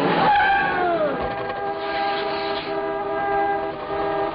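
Several car horns honking at once, their held tones overlapping in a blaring chord. In the first second there is a sound that falls in pitch.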